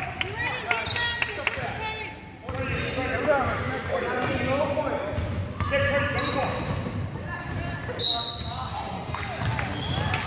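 Basketball being dribbled on a hardwood gym floor, with sneakers squeaking and players and spectators calling out, echoing in the hall. A short shrill squeal about eight seconds in is the loudest sound.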